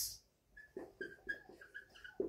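Whiteboard marker squeaking and scratching on the board in a faint series of short, quick strokes while writing, several with a thin high squeak.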